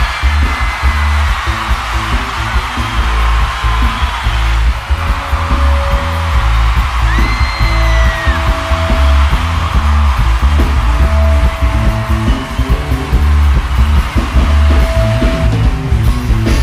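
Live band music played loudly through a PA, with heavy bass and electric guitar, heard from the crowd.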